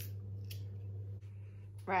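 Small knife trimming a raw carrot: two short, crisp scrapes about half a second apart, over a steady low hum.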